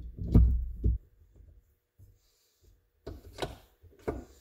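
A transmission drive axle with its gears pushed by hand into an ATV engine case. A low rubbing rumble with a sharp metal click about a third of a second in, then a few knocks as the shaft seats, about three seconds in.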